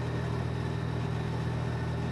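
A steady low hum that stays the same throughout, with no knocks or changes.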